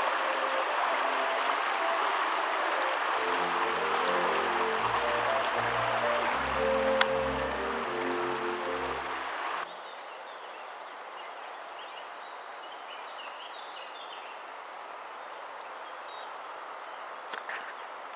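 River water running steadily over a rocky riffle, under orchestral string music for the first ten seconds. The music stops about ten seconds in, leaving only the quieter, even sound of the flowing river.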